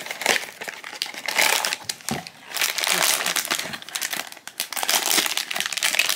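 A sealed foil-lined plastic blind bag crinkling as it is taken out of its cardboard box and handled: a dense run of crackles, with a short lull about two seconds in.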